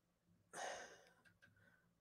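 A man's short breath, a sigh-like exhale, about half a second in; otherwise near silence.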